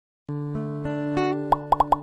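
Intro jingle music: a sustained synth-like chord starts about a quarter second in, followed by four quick plop sound effects in rapid succession near the end.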